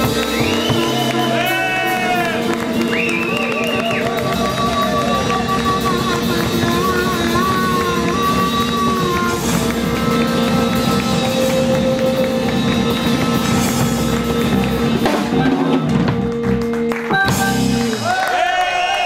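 Live band playing an instrumental passage: a harmonica played into a hand-held microphone carries the lead, with bending notes early on and long held notes in the middle, over electric bass guitar and drum kit.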